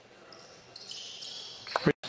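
Quiet basketball-gym room sound during a free throw, with faint high-pitched sounds rising in from about halfway. A man's commentary voice starts just before the end and is cut off abruptly.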